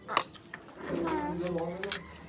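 A sharp clink of a metal fork or spoon against a dish, then a voice holding a hummed note for about a second, with a couple of faint clicks near the end.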